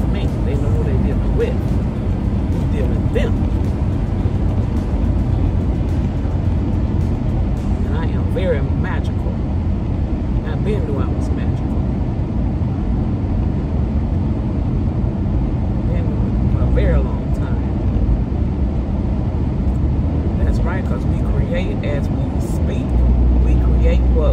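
Steady road and engine rumble inside a moving car's cabin at highway speed, swelling louder near the end as a truck passes alongside.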